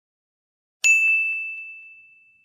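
A single bright bell-like ding, a chime sound effect on the channel's animated logo intro, struck about a second in and ringing on as it slowly fades.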